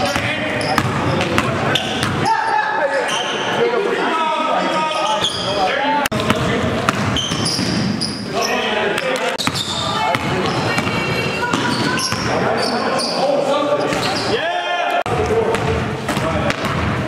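Basketball game sounds echoing in a gym hall: a ball bouncing on the hardwood floor among indistinct players' voices.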